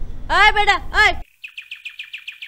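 A short burst of a high voice in the first half. Then, after a sudden drop in the background, a bird chirps in a quick, even run of short high notes, about eight a second.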